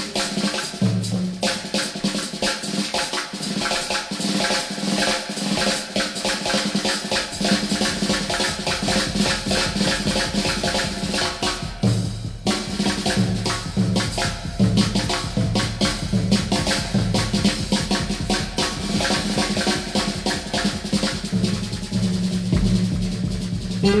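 Jazz drum solo on a drum kit: a dense run of rapid snare strokes and rolls, with bass drum and tom accents that come in bursts more often in the second half.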